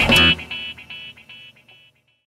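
Guitar music ending on a final chord struck just at the start, which rings and fades away to silence near the end.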